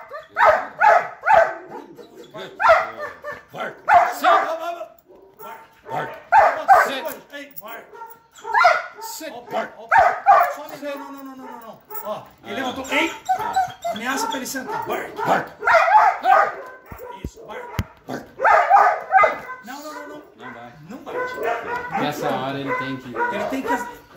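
A Belgian Malinois barking repeatedly in quick runs of short barks, on the bark command it is being trained to obey.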